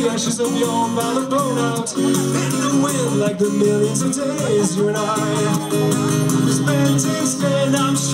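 Live acoustic folk song played through a PA: a steadily strummed acoustic guitar with a man singing over it.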